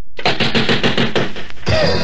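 A rockabilly band starting a new song: a fast run of evenly spaced hits, several a second, opens it, and the band's pitched instruments and the singer's voice come in near the end.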